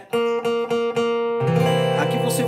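Acoustic guitar: a single note, the seventh of a C chord, plucked about four times in quick succession. About 1.4 s in, a fuller C7 chord is struck and left ringing.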